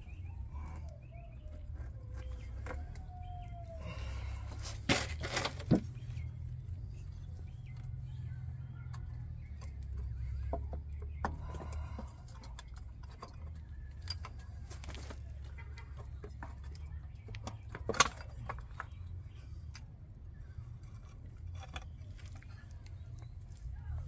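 Metal clinks and knocks as a motorcycle's stator cover is worked loose and pulled off the engine case by hand, with the sharpest clicks around five seconds in and again at about eighteen seconds. A steady low rumble runs underneath, and a bird calls briefly in the background near the start.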